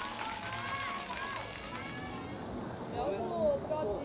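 Voices talking, not close to the microphone, over steady outdoor background noise.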